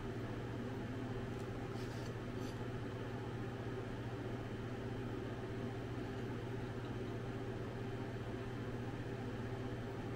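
Steady mechanical hum, holding a few even low tones, with no change.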